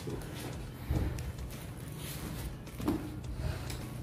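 Light handling noise on a tabletop: a click at the start, then soft knocks about a second and about three seconds in, over faint rustling, as a plastic stencil and masking tape are shifted on fabric.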